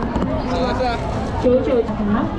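People talking nearby over the hubbub of a busy street crowd.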